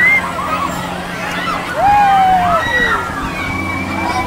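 High, short voice calls and squeals rising and falling in pitch, the loudest one falling slowly about two seconds in. Under them runs a steady low hum of carnival ride machinery.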